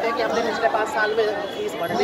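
People talking, several voices overlapping, close to a handheld microphone.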